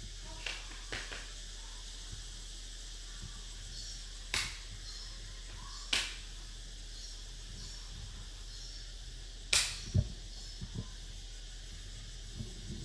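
Wooden xiangqi pieces being placed and moved on a cardboard board, giving a handful of sharp, irregular clicks, the loudest pair about ten seconds in.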